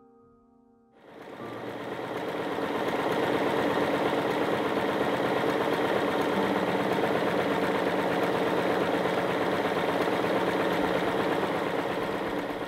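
Electric household sewing machine starting up about a second in, building up speed, then running steadily at speed while stitching fabric.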